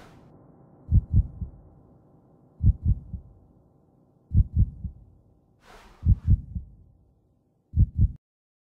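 Soundtrack of deep heartbeat-like thumps, usually three to a group with the last one softer, a group about every 1.7 seconds, over a faint drone that fades out. A short hissing whoosh comes just before six seconds in.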